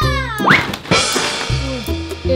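A large cardboard box structure toppling over with a noisy cardboard crash, set against steady background music. Just before the crash comes a high cry that glides down and then sweeps sharply up.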